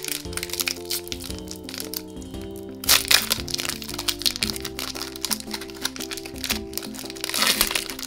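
Foil wrapper of a Disney Lorcana booster pack crinkling and crackling as fingers pry it open with some difficulty, loudest about three seconds in, over background music.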